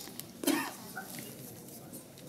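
A person coughs once, short and sharp, about half a second in, over faint murmur and small clicks in a large room.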